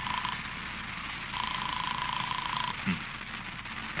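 Sound effect of a telephone ringing unanswered at the other end, heard through the receiver as a single steady tone in pulses of just over a second with gaps of about a second, over the hiss of an old recording. A brief low sound comes near the three-second mark.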